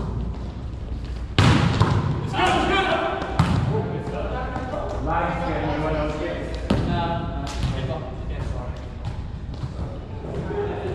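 A volleyball being struck and bouncing on a gym floor: several sharp slaps and thuds echoing in a large hall, the loudest about a second and a half in, with players' voices calling out between them.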